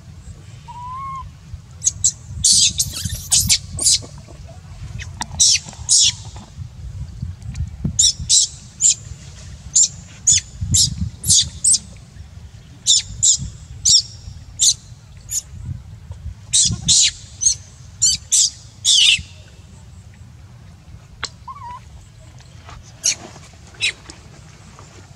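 Dozens of short, high-pitched calls in quick clusters, loudest and densest between about two and nineteen seconds in, with a short rising whistle near the start and again near the end. A steady low rumble runs underneath.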